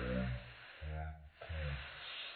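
A person's low voice making two short murmured sounds without clear words, over a steady hiss.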